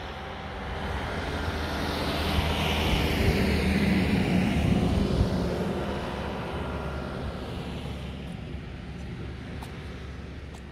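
A passing vehicle: a rushing drone that swells to a peak about four seconds in, then fades slowly away.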